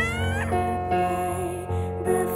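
A cat meows once at the start, a short rising call about half a second long, over soft background music of sustained notes.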